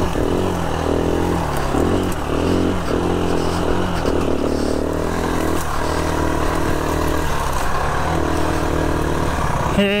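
Enduro dirt bike engine running at low revs on a slow trail ride, the throttle opened and shut every second or so so that the pitch keeps rising and dropping. Right at the end the revs fall away.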